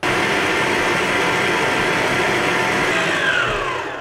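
Electric stand mixer running, beating soft unsalted butter in its bowl, a steady motor whir with a whine that falls in pitch near the end.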